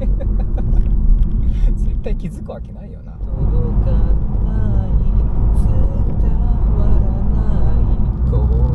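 Steady low rumble of road and engine noise inside the cabin of a Honda Civic hatchback (FK7) on the move. It dips briefly about two seconds in, then returns with a voice singing over it.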